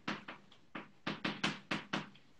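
Chalk writing on a blackboard: a quick run of about ten short, sharp taps and strokes as a word is written.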